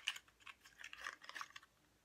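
Faint rustling and small irregular clicks of a small cardboard product box being opened by hand.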